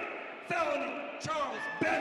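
A man's voice speaking excitedly into a handheld microphone, in words too unclear to make out, with three short low thumps.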